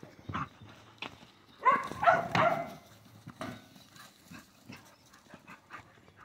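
Dingoes at play: a short run of high-pitched yelping calls about two seconds in, amid light scuffling footfalls and knocks.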